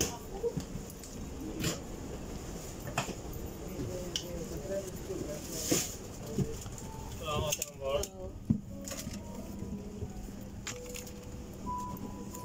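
Airliner cabin ambience: a low steady hum with scattered clicks and knocks, and faint voices about seven seconds in.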